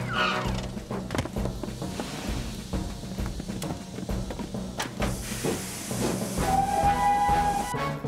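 Background music over a cartoon steam locomotive letting off steam: a hiss starts about five seconds in, and a steady whistle note sounds near the end.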